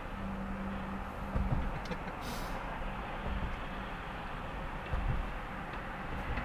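Road and engine noise heard inside a moving car: a steady hum and tyre rush, with two brief low thumps about a second and a half in and about five seconds in.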